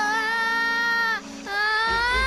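A high voice singing two long held notes, a short break between them, over a steady low musical tone.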